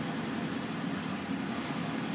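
Biological safety cabinet's blower running with a steady hum.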